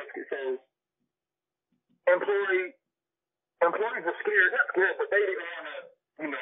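Men's conversational speech, with a pause of about a second and a half near the start.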